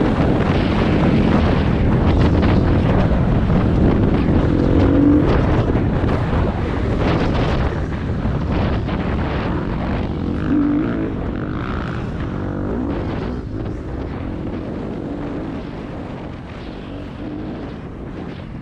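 Enduro dirt-bike engine running and revving up and down under throttle while riding, mixed with wind buffeting on the helmet camera's microphone. The sound gets gradually quieter over the second half.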